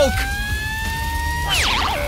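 A comic whistle-like sound effect for a burning mouth: a thin, high tone that rises slowly for about a second and a half, then a quick wavering slide downward.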